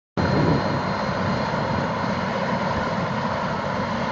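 Turbine helicopter running on the ground with its rotor turning: a steady high turbine whine over the rumble and chop of the rotor.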